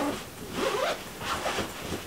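A bag's zipper being pulled, in two short rasping strokes about a second apart.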